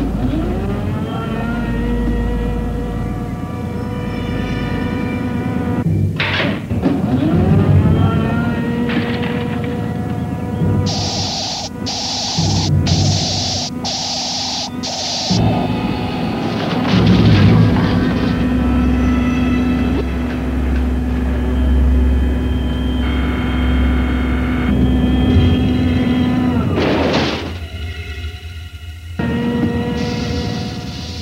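Synthesizer background score with long held tones, mixed with cartoon sound effects: several rising and falling sweeps and a quick run of five short, bright bursts about eleven seconds in.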